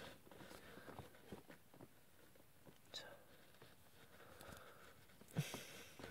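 Near silence with faint, scattered clicks of small plastic model-kit parts being handled and pressed together by hand.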